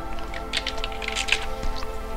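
Computer keyboard typing: an irregular run of quick key clicks, over steady background music.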